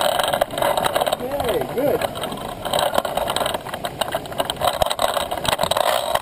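A person's voice briefly, in a short rising-and-falling tone about a second and a half in, over a steady rumble of outdoor background noise.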